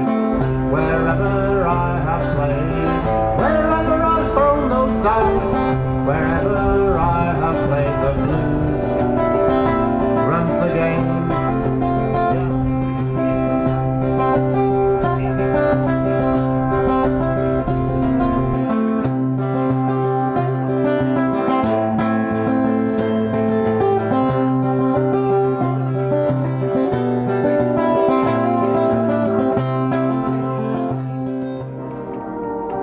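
Two acoustic guitars playing a folk-blues song together, picked notes over chords. A low held bass note drops out a little past halfway.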